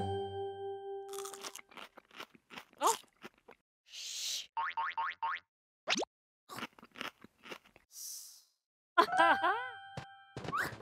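Cartoon crunching and chewing sound effects of celery sticks being bitten, a run of short crisp crunches. They are mixed with the characters' wordless cartoon vocalizations near the start and again near the end, and bits of comic sound effects.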